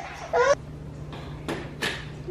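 A short vocal sound near the start, then two sharp plastic-and-metal clicks about a third of a second apart from a Nuna Demi Grow stroller's seat adapters being worked on the frame, over a low steady hum.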